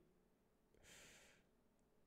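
Near silence, with one faint breath, a short exhale or sigh, about a second in.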